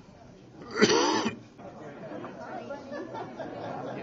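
Indistinct chatter of a crowd of people talking in a room, with one loud short vocal burst close to the microphone about a second in.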